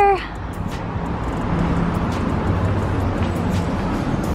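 Busy city street ambience: a steady wash of traffic noise with a low rumble from passing cars.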